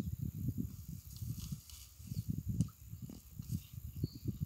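Uneven low rumble of wind buffeting the microphone outdoors, with a faint click about two and a half seconds in.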